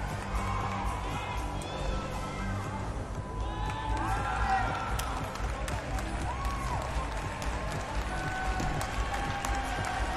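Gymnastics arena ambience: music playing over the hall, with crowd chatter and scattered claps and cheers.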